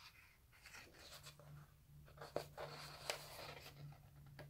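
Faint rustling and light handling of a paper coloring book's pages as they are turned by hand, with a faint steady low hum behind it.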